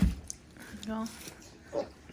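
A young child's short wordless vocal noises: a brief sliding note at the start, a short steady hummed note around the middle, and another quick sliding note near the end.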